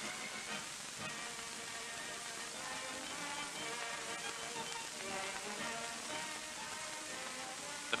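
Quiet background music of held, shifting notes over the steady hiss of an old film soundtrack.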